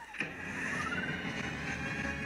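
An intro sound effect with a tone that sweeps up and down in pitch twice, marked by a click shortly after the start, running into the start of an electronic music mix.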